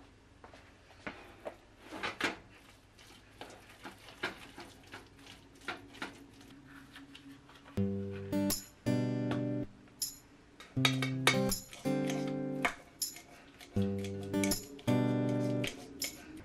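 Background music of strummed acoustic guitar chords that starts about halfway through. Before it there are scattered soft clicks and taps, with the spatula working the beans in the pan.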